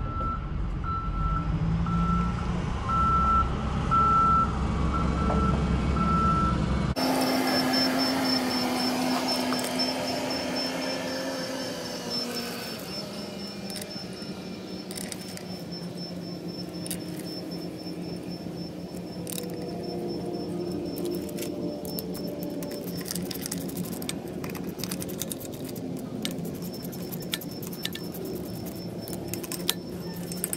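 For the first seven seconds a vehicle's reversing alarm beeps steadily over a low engine rumble, then cuts off abruptly. After that comes a faint steady high tone, and from about halfway on, runs of small metallic clicks from a hand ratchet turning in the hubcap bolts on a trailer hub; the clicks grow busier near the end.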